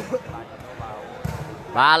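A few dull thuds of a volleyball in play, under faint background voices. The commentator's voice comes back near the end.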